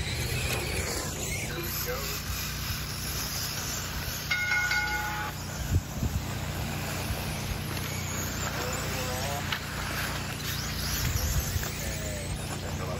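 Radio-controlled cars racing on a dirt oval, their motors running as they circle, over voices in the background. A steady tone lasting about a second sounds about four seconds in.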